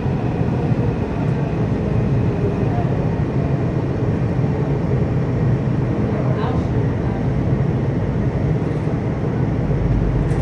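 Washington Metro railcar running on the rails, heard from inside the car: a steady low rumble of wheels and car body, with a faint high whine that fades in the first few seconds as the train slows for a station stop.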